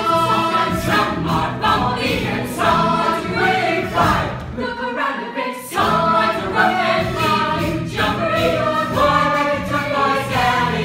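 A stage musical's cast singing together in chorus, mixed men's and women's voices, loud and continuous.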